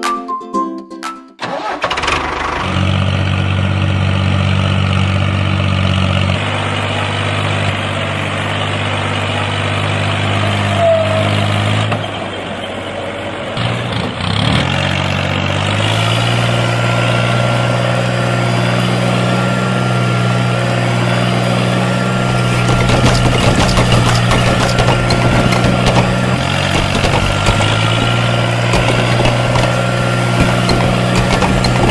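A tractor engine running steadily after a few plucked guitar-like notes fade out at the start. Its note drops and comes back up briefly around the middle, then it runs on steadily.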